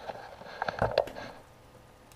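A few soft clicks and knocks in the first second, then quiet room tone. The knocks fit handling noise as the camera is moved closer to the laptop screen.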